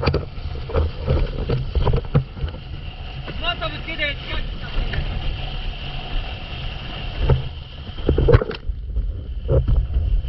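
Wind buffeting an action camera's microphone at planing speed over choppy sea, with water splashing and the board knocking on the chop. A brief shout is heard around four seconds in, and a loud splash or hit comes a little after eight seconds.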